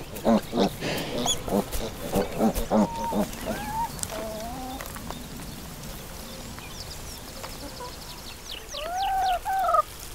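Pigs grunting in short, low, rhythmic pulses, about three a second, followed by a few short gliding squeals. Near the end, a chicken gives two loud, drawn-out squawks, each rising and falling.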